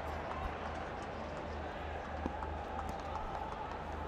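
Steady field-microphone ambience of a cricket ground with empty stands: even background noise with a low hum and no crowd, and a faint knock about half a second in.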